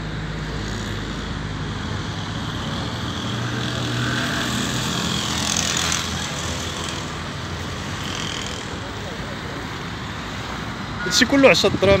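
Steady outdoor road-traffic noise that swells a little around the middle as a vehicle goes by. Near the end a voice calls out in a wavering, sing-song tone.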